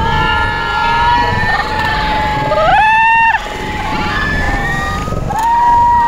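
Several voices hold long, drawn-out shouts over the wash of surf, with one shout rising sharply about three seconds in.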